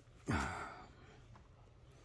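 A man's short breathy sigh, its pitch falling, about a quarter second in.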